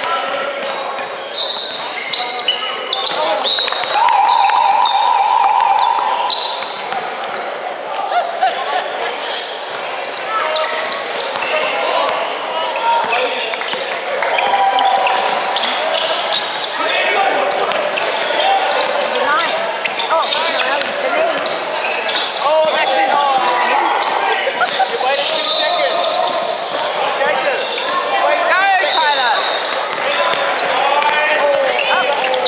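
Indoor basketball game sounds echoing in a large hall: a basketball bouncing on a hardwood court, players' sneakers squeaking, and players and spectators calling out. A steady tone sounds for about two seconds around four seconds in.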